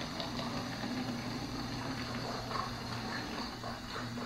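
Battery-powered toy hamster's small motor whirring steadily as it rolls across a hardwood floor.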